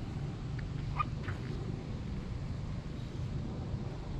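Steady low outdoor rumble with a few faint, short chirps about a second in.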